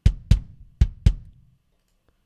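Soloed kick drum from the Superior Drummer software instrument, its kick in, kick out and sub mics summed on one channel, playing four beats within about a second, then ringing out.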